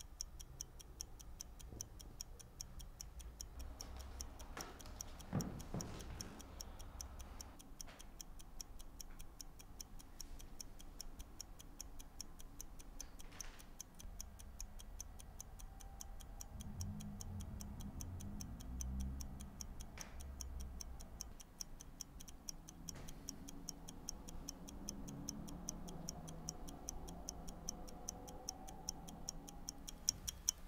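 Mechanical stopwatch ticking fast and evenly, with a soft thump about five seconds in and faint low rumbling partway through.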